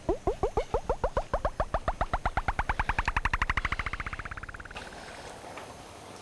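Comic sound effect: a train of short upward-sliding blips that speed up and climb in pitch over about four seconds, then fade out.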